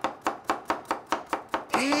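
Kitchen knife chopping carrots on a wooden cutting board: a fast, even run of sharp knocks, about seven a second.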